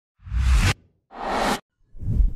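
Two whoosh sound effects of an animated logo intro, each a rush of noise with a deep low rumble that cuts off abruptly, and a third whoosh beginning near the end.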